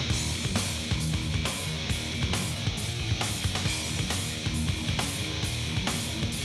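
Heavy metal band playing: distorted electric guitars and bass over a steady drum beat with regular cymbal hits.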